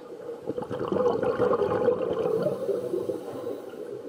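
Water churning and bubbling as the Aquanaut underwater robot's thrusters push it through the pool, with a faint steady tone under the splashing. It builds in the first second and eases off near the end.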